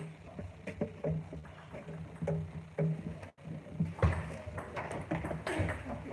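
Table tennis ball clicking sharply against the table and bats, a scattered series of short ticks as play resumes, over a steady low hum.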